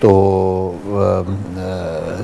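A man's voice holding two long drawn-out vowels of steady pitch, about a second each, the first louder: a hesitation sound between phrases of speech.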